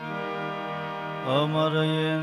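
Live devotional music: held, steady instrumental tones, then a voice starts singing a wavering, ornamented line about a second in.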